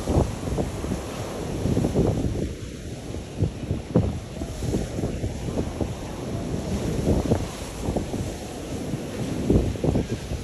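Wind buffeting the phone's microphone in uneven gusts, over the wash of small waves breaking on a sand beach.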